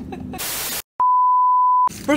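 A steady pure-tone beep added in editing, lasting just under a second and starting about a second in, cut in sharply with a click at each end. Just before it, a short burst of hiss and a moment of dead silence.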